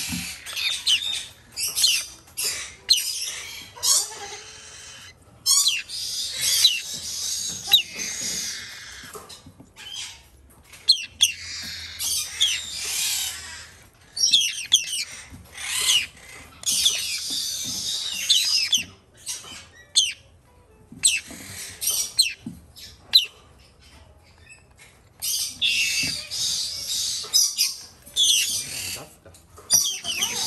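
Jardine's parrot (red-fronted parrot) chicks calling at a high pitch in rapid, repeated bursts with short pauses: the begging calls of unweaned chicks being hand-fed from a syringe.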